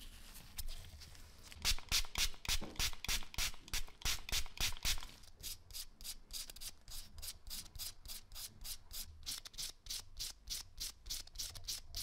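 Small brass lighter parts being hand-sanded with a strip of sandpaper, in quick back-and-forth strokes of about four a second. The strokes are louder in the first few seconds, then lighter.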